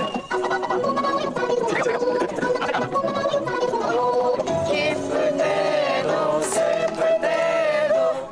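A Korean song about thanking mum and dad, played back fast-forwarded at five times speed, with singing.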